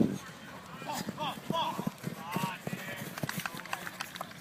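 Distant shouted calls from players, heard between about one and two and a half seconds in, over a run of irregular low thuds from running footsteps on grass.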